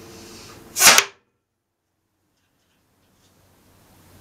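A blowgun dart is shot from a homemade half-inch conduit blowgun and hits a plywood target: one short, sharp burst about a second in, after which the sound drops out to silence.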